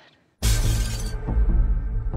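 Near silence, then about half a second in a sudden crash of shattering glass, whose bright spray rings for under a second, over a low, steady drone of ominous trailer music.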